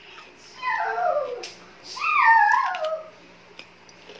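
Two drawn-out calls from a pet animal, each sliding down in pitch, the first starting about half a second in and the second, which wavers as it falls, about two seconds in.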